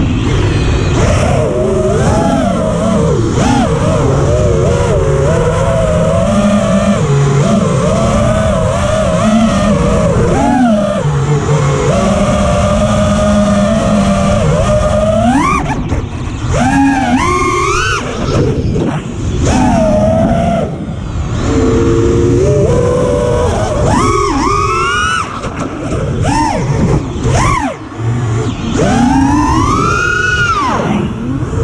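FPV freestyle quadcopter's brushless motors and propellers whining, heard from the onboard camera on a 5S battery, the pitch rising and falling with the throttle. Sharp rising sweeps come as the throttle is punched, several times past the middle and again near the end.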